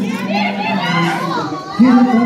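A performer's voice amplified through a microphone and PA, over the chatter and shouts of a crowd of young audience members in a hall.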